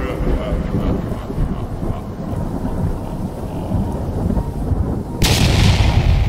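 Cinematic intro sound effects: a deep, continuous rumble, then a sudden loud explosion blast about five seconds in.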